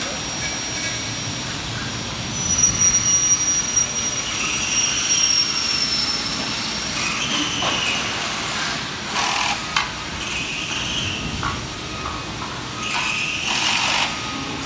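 Steady factory-floor machinery noise with a constant high-pitched whine. A few short hissing surges come about nine seconds in and again near the end.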